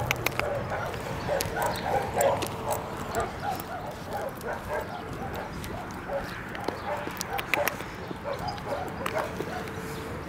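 A dog on a leash whimpering and yipping softly in short repeated sounds, several a second, with footsteps on a gritty road.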